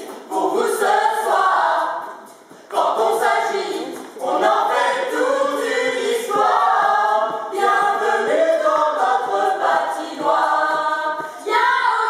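A mixed group of men's and women's voices singing an anthem together, unaccompanied, with a brief break about two and a half seconds in.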